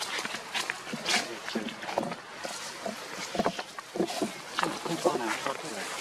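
Voices chattering in short, broken bursts, with scattered clicks and rustles among them.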